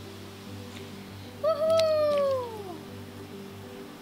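Background music with steady tones, and one long, squeaky, high-pitched call about a second and a half in that falls slowly in pitch.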